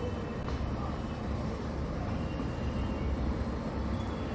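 Steady low rumble of background noise with a faint hiss over it, even throughout, with no speech.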